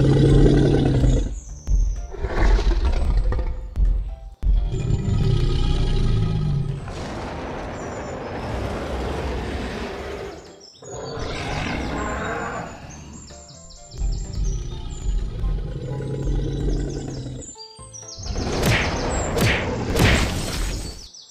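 A series of dinosaur roar sound effects, each a few seconds long with short breaks between them, over background music.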